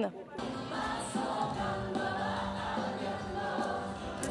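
Many voices singing a religious hymn together, starting about half a second in and going on steadily.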